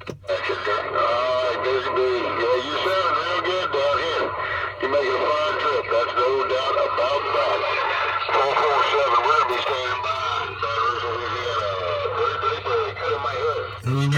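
A man's voice coming in over a Cobra CB radio's speaker: a distant station's long-distance reply on channel 28. It sounds thin and tinny, with steady static under it, and the words are hard to make out.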